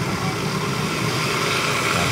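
Steady rushing of water running from a hose into a large metal washbasin.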